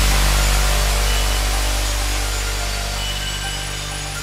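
Breakdown in a progressive house track: the drums have dropped out, leaving a held low bass chord under a wash of white noise that slowly fades, with a few short high synth notes.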